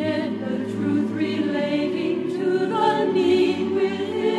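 A choir singing a sacred song, several voices together in harmony.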